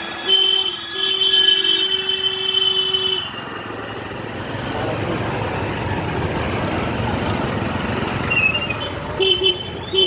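A vehicle horn sounds in a steady honk of about three seconds, with a brief break near the start, in street traffic. It gives way to a steady rush of engine and road noise heard from a moving motorcycle. A few short horn toots come near the end.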